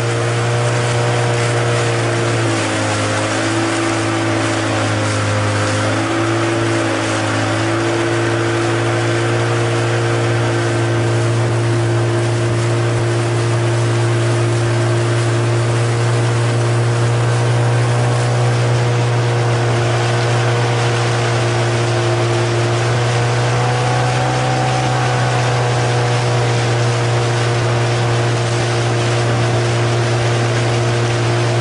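Motorboat engine running steadily, its pitch dipping a few seconds in and rising slightly near the end, over a steady hiss.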